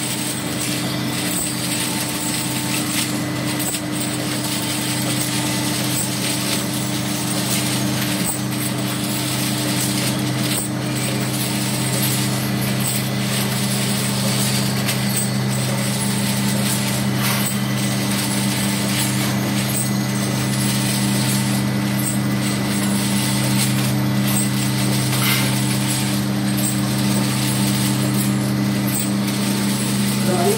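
8-head ampoule filling machine running: a steady hum with continuous mechanical rattling from its moving parts.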